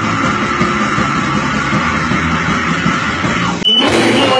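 Live heavy metal band playing loud, with distorted electric guitars and drums and a long held high note over them, recorded on a phone. Near the end it cuts abruptly to another loud live band recording.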